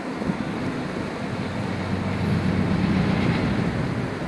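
Car ferry passing close under way: a steady low engine rumble with rushing water and wind on the microphone, growing a little louder partway through.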